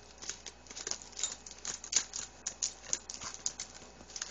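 A chihuahua rummaging nose-first through a paper gift bag, the paper, cards and small boxes inside rustling and crinkling in a quick, irregular run of short crackles.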